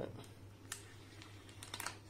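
A pointed metal tool picking and scratching at the plastic shrink-wrap on a box of watercolour tubes: a few light clicks, with a quick cluster near the end.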